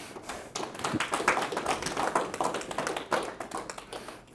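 A small audience applauding, the clapping thinning out near the end.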